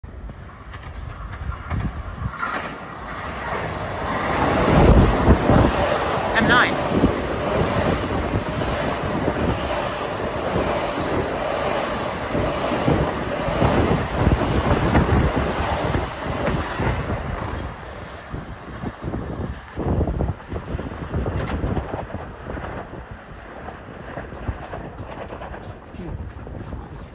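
LIRR M9 electric multiple-unit train running past along the platform: a rising rumble that is loudest from about four to seventeen seconds in, with a steady motor hum and wheels clicking over rail joints, then fading as the last cars go by.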